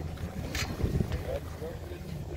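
Wind rumbling on a phone's microphone outdoors, with a few knocks and rubs from the phone being handled.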